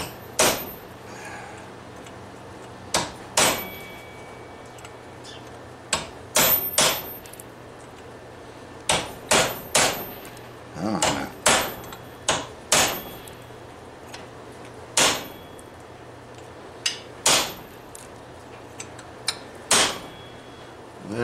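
Hand hammer striking a steel punch or chisel held against a railroad spike clamped in a vise, as the smith works the face of a lion-head spike knife. The strikes are sharp metallic blows in irregular groups of one to four, some leaving a short high ring.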